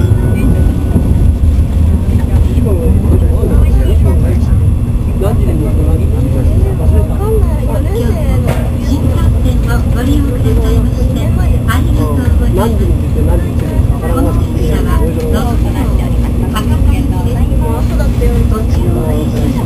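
Steady low running rumble of an N700-series Shinkansen, heard from inside the passenger cabin while the train is under way.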